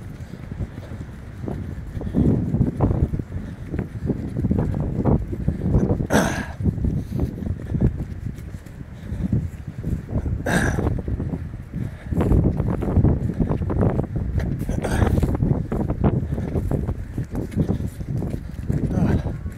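Footsteps along a dirt trail, with rustling and wind buffeting picked up close by a handheld phone's microphone as it swings with the walker.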